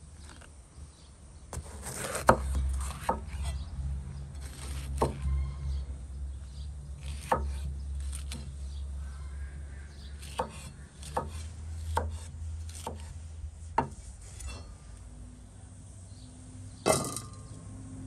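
Chef's knife chopping bell peppers on a wooden cutting board: irregular knocks of the blade striking the board, roughly one a second, with a louder knock near the end.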